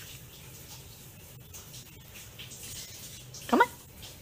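A cat gives one short, rising meow about three and a half seconds in, over faint soft scuffling.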